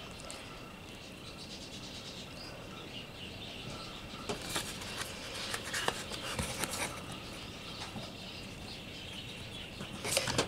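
Faint budgerigar chirps and flutters in the aviary, over a faint steady high tone, with a few short clicks and rustles in the middle.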